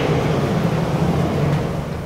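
Vertically sliding chalkboard panels being moved along their tracks, a steady continuous sliding rumble for about two seconds.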